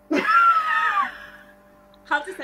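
A person's voice holding a high, wavering, song-like note for about a second, mimicking singing. The note slides down in pitch and trails off.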